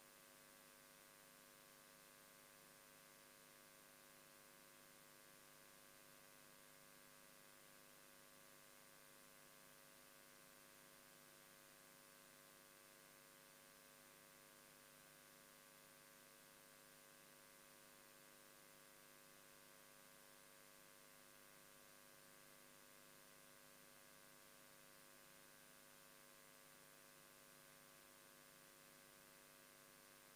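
Near silence: a faint, steady electrical hum over light hiss.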